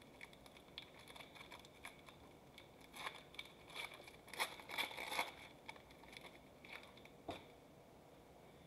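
Foil wrapper of a Panini Mosaic football card pack crinkling and tearing as it is opened and the cards pulled out: faint scattered crackles, busiest around the middle, with one more sharp crackle near the end.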